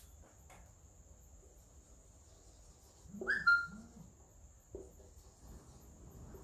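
Faint, steady high-pitched chirring of crickets. A brief two-note call sounds a little past the middle.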